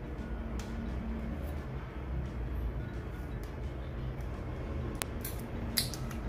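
Faint handling of a new badminton overgrip as it is unwrapped and wound: soft rustles and a few light clicks, over a low steady hum.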